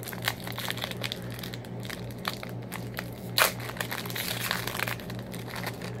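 A trading-card pack wrapper crinkling and tearing as it is opened by hand, in a run of small crackles with one sharper, louder crackle about three and a half seconds in.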